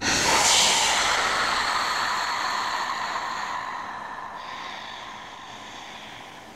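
Logo-reveal sound effect: a hissing whoosh that hits suddenly, then fades slowly over several seconds.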